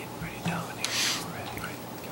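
Soft whispered speech in a meeting room, with a hissing 's'-like sound about a second in, over a steady low electrical hum.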